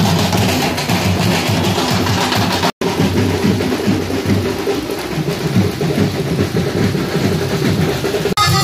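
A troupe of drummers beating large waist-slung barrel drums in a loud, dense, fast rhythm, broken by a brief total dropout a little under three seconds in.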